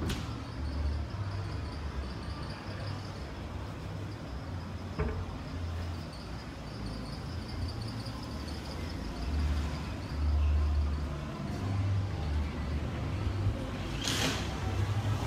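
Outdoor street ambience with a low, gusty rumble coming and going, typical of wind on a handheld phone microphone, over a faint steady high-pitched pulsing hum. A sharp click comes at the start and another about five seconds in.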